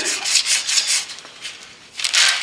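80-grit sandpaper rubbed by hand, without a block, over wrinkled paint that is not sticking to the door jamb: fast back-and-forth rasping strokes that fade out about two-thirds of the way through.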